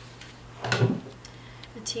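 A single short thump about two-thirds of a second in, as something is bumped or set down on the desk while the planner is being worked on. A woman's voice starts just before the end.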